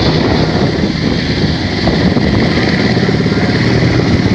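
UH-60 Black Hawk helicopter hovering close by: a loud, steady, fast chop from its main rotor over the continuous run of its twin turboshaft engines.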